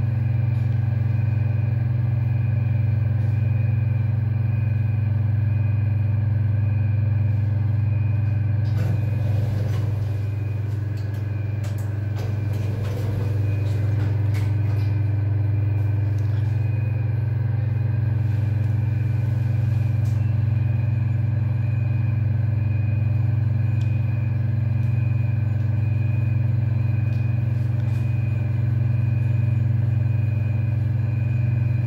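Schindler elevator car travelling up: a steady low hum with a faint high whine that pulses about twice a second. A stretch of clattering and rustling comes about nine to fourteen seconds in.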